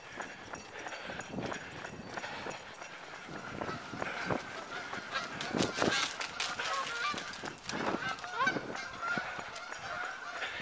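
Geese honking several times in the second half, over the knocks of running footsteps on the road and a jostled camera.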